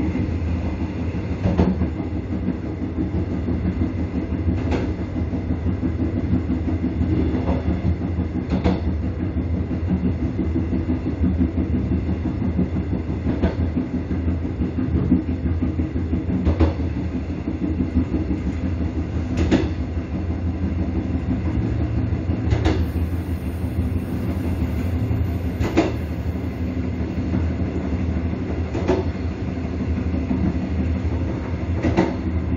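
Passenger train running at speed, heard from the rear of the train: a steady rumble with a low hum underneath, and a sharp clack from the wheels over the rail joints about every three seconds.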